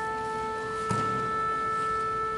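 A wind instrument holding one steady, unwavering note, with a single knock about a second in.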